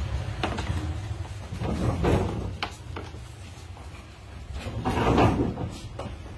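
Framed pictures knocking and rubbing against one another as they are handled. A few sharp knocks come about half a second in and again around two seconds in, then a longer scraping rustle near the end.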